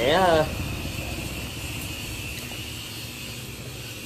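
A steady, low engine-like hum from a vehicle, fading slightly toward the end.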